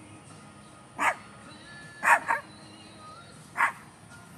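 A dog barking four times: a single bark about a second in, a quick double bark in the middle, and another single bark near the end.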